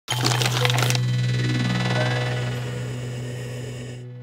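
Synthesized intro sound effect: a noisy burst in the first second over a steady low drone, which slowly fades away.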